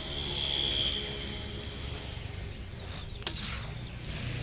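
Outdoor ambience: birds chirping, with one held high note in the first second, over a steady low rumble. A single sharp click comes about three seconds in.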